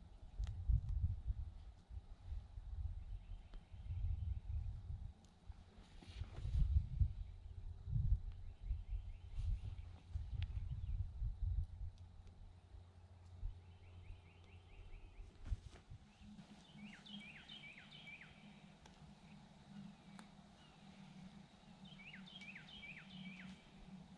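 Wind buffeting the microphone in uneven low gusts for the first half. Then a steady low hum, with a small bird twice singing a short burst of quick, falling chirps near the end.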